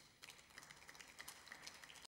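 Faint, scattered applause from a few people: irregular individual hand claps.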